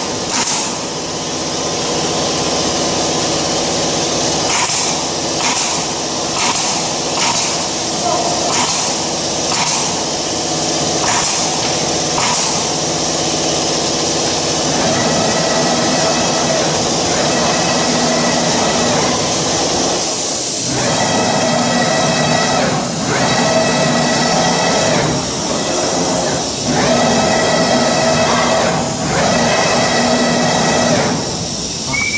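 CNC router's gantry making rapid traverse moves: a steady mechanical hiss and hum, with a whine of the axis drives that from about halfway through drops out briefly every few seconds as the gantry stops and reverses. In the first half there are sharp ticks about once a second.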